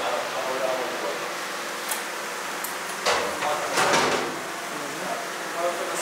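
Faint, indistinct voices over a steady room noise, with a couple of brief noisy sounds about three to four seconds in.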